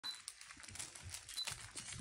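Faint scuffling and rustling of Labradoodle puppies playing on a fleece mat among soft toys, with two brief high squeaks, one at the start and one past the middle.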